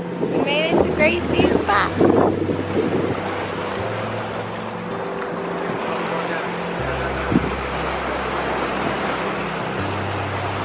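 Lake Superior waves washing against a rocky shoreline, with wind on the microphone. Soft background music with sustained low notes plays under it, and a few short high chirps come in the first couple of seconds.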